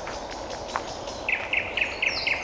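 Nightingale singing: after a quiet first second, a fast run of repeated short, identical notes begins.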